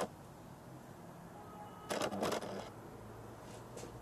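Quiet room tone with a single short spoken word about two seconds in and a couple of faint clicks near the end.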